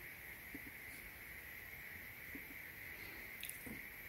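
Quiet room tone: a faint, even hiss with a steady high thin whine, and a few faint soft clicks scattered through it.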